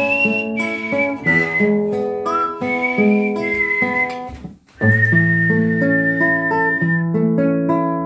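A man whistling the melody over a fingerpicked nylon-string classical guitar. Both break off in a brief gap just past halfway, then resume, the whistle holding one long note.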